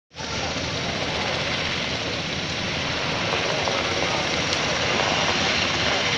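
Military helicopter flying low over a landing field where MV-22 Osprey tiltrotors stand with rotors turning: a steady, loud drone of rotors and turbine engines.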